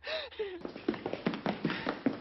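Footsteps of several people walking on a hard tiled floor, a quick, uneven run of sharp steps several per second in an echoing hall, after a brief vocal sound at the start.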